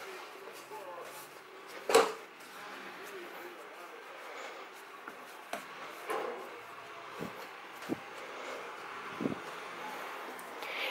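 Hands kneading stiff dough on a stone worktop: soft pressing and rubbing, with a sharp knock about two seconds in and several lighter knocks later.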